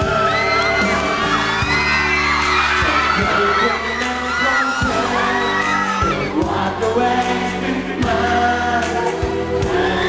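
Live pop band music with singing, and a crowd whooping and cheering.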